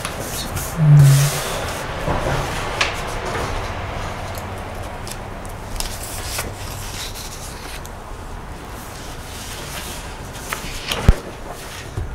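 Papers rustling and pens scratching as documents are signed and shuffled on a wooden table, with scattered small clicks. A short low hum comes about a second in, and a sharp knock on the table near the end.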